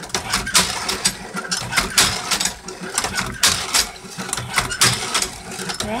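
Prototype hand-cranked cherry pitter in motion: its drum turning and the row of pitting pins working, giving a run of irregular clacks and knocks over a steady mechanical rumble.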